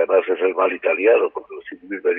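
Speech: a man talking, in the same voice and manner as the surrounding conversation.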